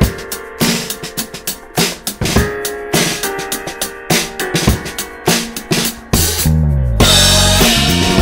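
Drum kit playing a groove of bass drum, snare, hi-hat and ride hits along with a band's backing track. About six seconds in a falling bass line comes in, and a second later the music turns fuller and louder.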